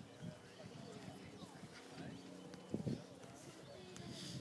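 Faint background chatter of voices in the open, with a few short knocks about three seconds in.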